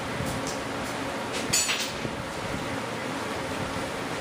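Steady background hiss of room noise, with a few brief handling sounds, the clearest about a second and a half in.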